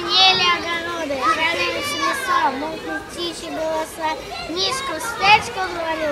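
Speech only: a young child talking, high-pitched and continuous.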